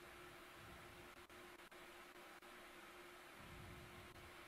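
Near silence: the faint steady hiss of a live audio feed with a low steady hum, dipping out briefly a few times.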